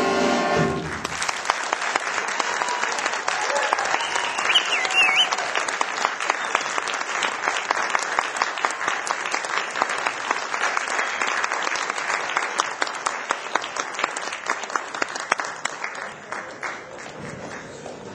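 A band's final held chord, cut off about a second in, then an audience applauding, with the applause fading out near the end.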